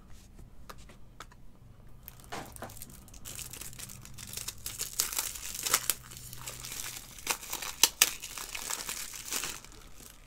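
Crinkling and tearing of trading-card pack packaging being worked open. Only a few light clicks at first, then from about two seconds in a busy run of sharp crackles.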